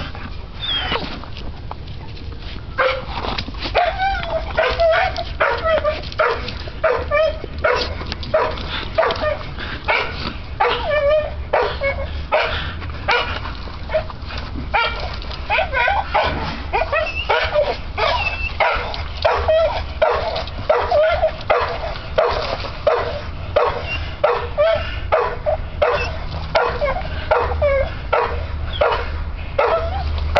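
Bull terrier-type dog making short, pitched vocal sounds in a rapid series, about two a second, while gripping and tugging on a spring-pole rope; the calls start a couple of seconds in and keep going.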